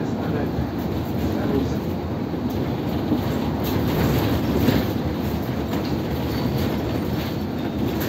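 Interior noise of a moving city bus: a steady low rumble of engine and tyres on the road, with a few light rattles near the middle.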